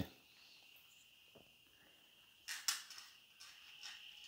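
Leather wallet being handled and opened: a couple of short rustles and clicks about two and a half seconds in.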